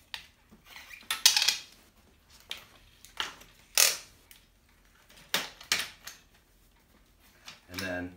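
Dahon folding bike being folded by hand: a string of separate metallic clicks, clanks and rattles as the handlebar stem is lowered and the frame hinge folds the bike in half. The loudest clanks come a little over a second in and near four seconds in.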